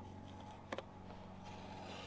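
Faint sound of blue painter's tape being peeled off a fiberglass boat console, with a single light click about three quarters of a second in, over a low steady hum.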